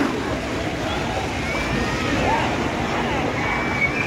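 Busy water park ambience: a steady wash of water noise under the distant shouts and chatter of many people.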